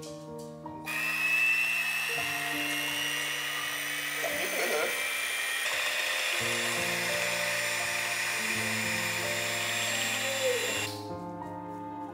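Electric hand mixer running, beating a chocolate batter: a steady motor whine that starts about a second in and cuts off near the end.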